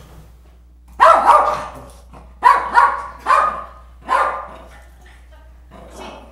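A small dog barking: five short, sharp barks, starting about a second in and spread over roughly three seconds.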